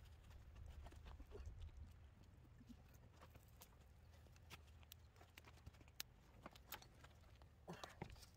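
Near silence, with faint scattered clicks and light taps as a stiff resin-coated composite dash panel is handled and turned over on wooden sawhorses. A few sharper ticks come later on, with a small cluster near the end.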